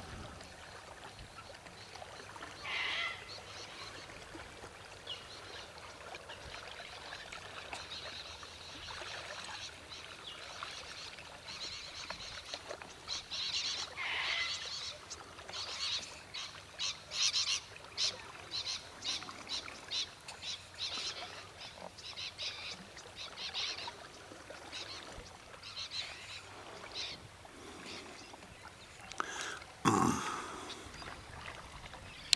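Wild birds calling outdoors: a couple of longer calls, then a long run of short, rapid calls through the second half, over a faint steady background of wind.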